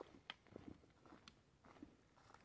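Near silence, with a few faint, scattered clicks.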